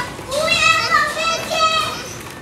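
A toddler's high-pitched voice making two drawn-out, wordless calls.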